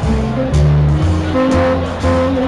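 Live band with saxophone playing, horns holding notes over a bass line that changes note about twice a second.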